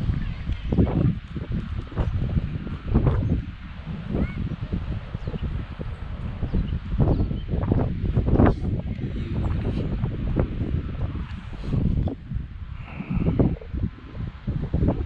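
Footsteps of someone walking, an uneven series of steps, with wind rumbling on the microphone throughout.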